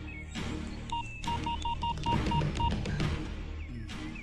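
Mobile phone keypad beeping as a number is dialled: a quick run of about eight short beeps, over background music.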